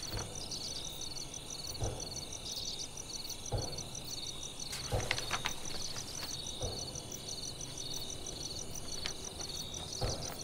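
Crickets chirping in a steady, evenly pulsing rhythm, with a few soft knocks and rustles in between.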